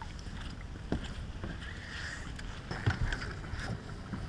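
A hooked snook splashing at the water's surface beside the boat hull, with a few short splashes and knocks over a steady wash of wind and water.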